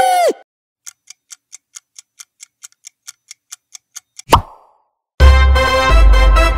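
The last note of a phone ringtone falls away. A countdown clock ticks steadily, about four or five ticks a second for some three seconds. Then comes a single sharp pop, and a loud music sting with heavy bass starts near the end.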